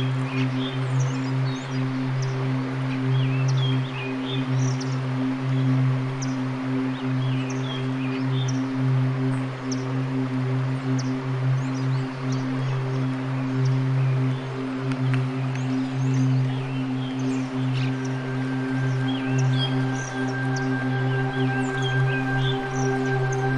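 Ambient relaxation music of long, sustained drone tones like a singing bowl, with short bird chirps scattered over it. A higher held tone joins near the end.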